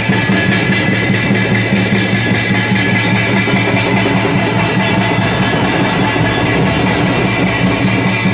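Folk orchestra playing: loud, full ensemble music with sustained low notes, running on without a break.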